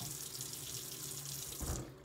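Kitchen faucet running into a plastic water bottle over a stainless steel sink, a steady splashing hiss that stops near the end with a brief low knock.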